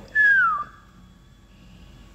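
A man whistles a single falling note lasting about half a second, an admiring whistle.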